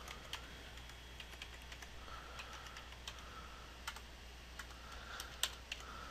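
Faint computer keyboard typing: scattered single key presses as numbers are entered into a data-entry form.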